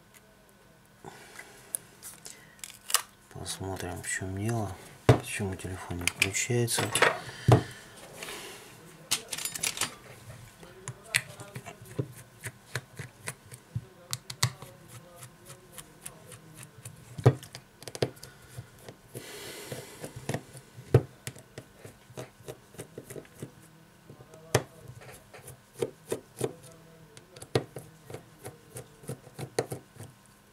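Irregular small clicks, taps and light scrapes of fingers and a small screwdriver working on the opened metal frame of a Samsung Galaxy S6 Edge, as screws are undone and parts are pried loose. The clicks are short and sharp and scattered throughout, with a busier stretch of handling a few seconds in.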